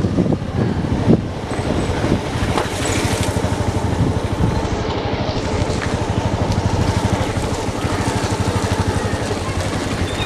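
Motorcycle engine running at a steady speed while riding, with a fast even pulsing throughout.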